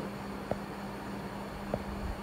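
Steady low hum and hiss of background noise, with two faint light taps about a second apart: a stylus touching down on a tablet screen while handwriting.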